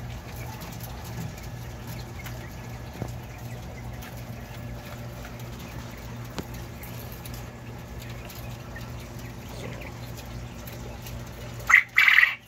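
Caged coturnix quail calling faintly now and then over a steady low hum, with one loud, short, high call just before the end.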